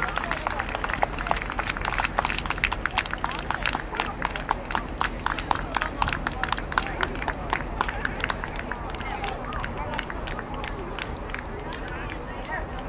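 Audience clapping in time, a steady beat of about three claps a second, thinning out near the end.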